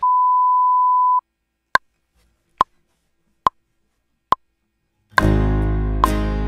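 A steady test-card reference tone for just over a second, then four metronome clicks evenly spaced at 70 beats a minute, a one-bar count-in. About five seconds in, the multitrack music of piano, bass and guitar starts playing.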